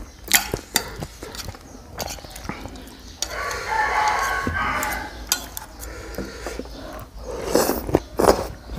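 Metal spoon and fork clicking and scraping on a plate, with eating sounds and a slurp near the end. About three seconds in, a rooster crows once in the background, a drawn-out call of about two seconds.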